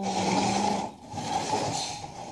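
Two long, breathy rushes of air close to the microphone, each lasting about a second, like a person breathing out or blowing.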